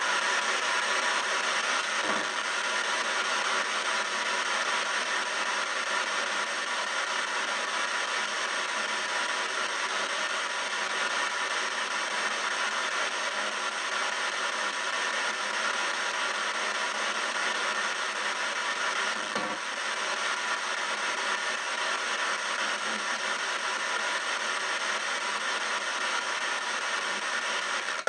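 P-SB7 spirit box sweeping radio stations in reverse sweep, played through stereo speakers: a steady hiss of radio static at an even level, with two brief faint clicks.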